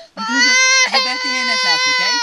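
Toddler girl crying: one long high wail that starts just after the beginning, catches briefly about a second in, then carries on with its pitch slowly falling.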